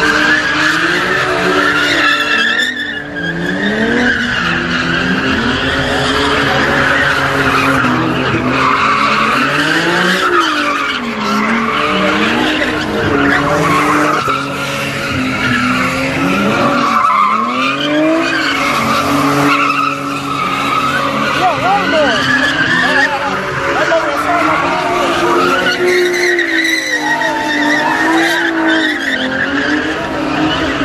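Cars spinning donuts: the engines rev up and down again and again while the rear tyres squeal against the asphalt without a break.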